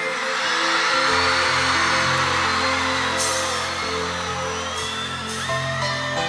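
Live pop band playing an instrumental intro, sustained keyboard chords over a steady bass line, with an arena crowd cheering and whistling over the music.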